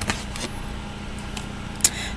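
Low room noise with light handling sounds and one sharp click near the end as a plastic eyeshadow palette is picked up.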